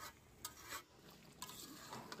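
A few faint scrapes of a metal spatula stirring mutton pieces through thick spice paste in a pan, as the meat is browned (kosha-style) before water goes in.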